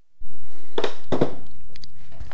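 A steady rushing noise with several light knocks and clicks over it, typical of close handling near the microphone and tools being moved.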